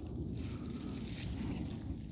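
Faint, steady chirring of autumn insects such as crickets, with low rustling from a cotton-gloved hand handling orchid leaves and pine litter.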